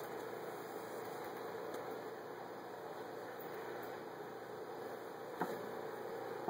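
Steady faint hiss of room tone and microphone noise, with a single faint click about five and a half seconds in.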